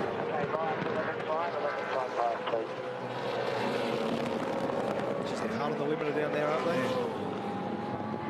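A V8 Supercars race car engine running hard. Its note rises and drops through several quick pitch changes in the first couple of seconds, then holds a long, slowly falling note.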